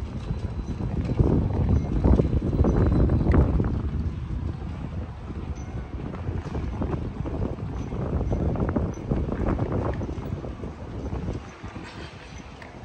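Footsteps on pavement, as uneven knocks over a low wind rumble on the microphone. Both are louder in the first few seconds and ease off near the end.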